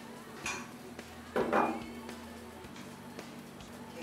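A spoon stirring and scraping a salad in a glass bowl, with a couple of brief clinks, over soft background music.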